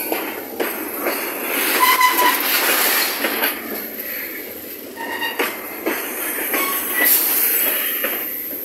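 Freight train of covered hopper cars rolling past close by: steel wheels clattering on the rails, with sharp clicks as wheels cross rail joints. Short high squeals from the wheels come about two seconds in and again near the end.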